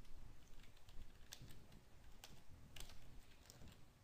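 Faint, scattered taps on a computer keyboard, a handful of quick clicks, some in close pairs, over a low background hiss.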